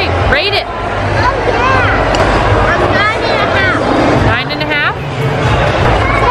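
Restaurant hubbub: high children's voices and chatter over background babble, with a steady low hum underneath.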